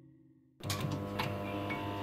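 Soundtrack under a video's title card: soft music fades to near silence, then a dense, steady drone with a few sharp clicks cuts in abruptly about half a second in.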